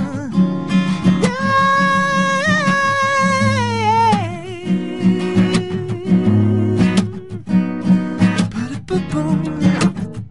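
Acoustic guitar playing a song, with one long sung note held over it from about a second in, sliding down in pitch near four seconds.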